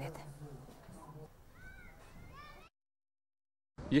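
Two short high-pitched cries that rise and fall, about two seconds in, over low room sound, followed by a second of dead silence at an edit cut.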